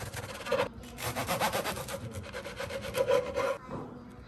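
Kitchen knife sawing back and forth through a bread sandwich onto a wooden cutting board, rasping through the crust. A short cut comes first, then a longer run of quick strokes from about a second in until shortly before the end.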